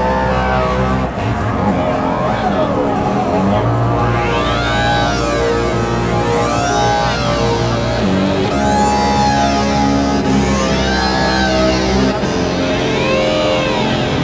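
Synthesizer app on an iPhone played from its on-screen keyboard: sustained bass notes and chords that change every few seconds, with a high sweeping tone that rises and falls about every two seconds.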